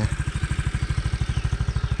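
Motor scooter engine idling close by, a fast, even putter. Faint bird chirps come in over it in the second half.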